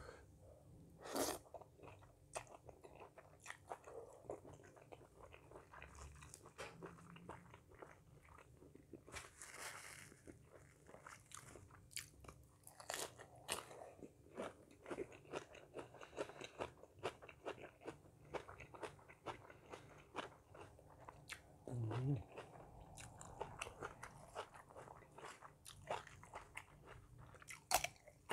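A person eating close to the microphone, chewing and crunching raw lettuce, cucumber and rice noodles in a spicy salmon salad. There are many small crisp crunches and mouth clicks, with a few louder bites about a second in, around the middle and at the end.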